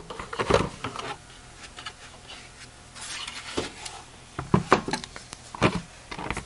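Plastic rear housing of a benchtop oscilloscope being worked off its metal chassis by hand: scattered clicks, scrapes and rubbing, with a few sharper knocks near the end.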